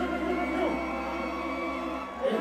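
Live Haitian konpa band music with held chords ringing out; the bass drops away near the end.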